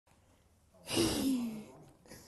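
A breathy sigh from one person's voice, falling in pitch and lasting under a second, about a second in.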